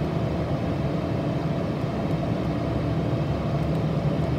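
Steady low background hum, even in level throughout, with no clicks or other events.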